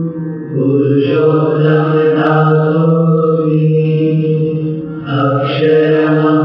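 Hindu devotional mantra chanted by voices over a steady drone, in repeated phrases that pause briefly about half a second in and again near five seconds.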